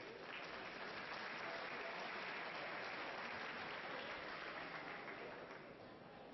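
Audience applauding, swelling up just after the start and dying away near the end.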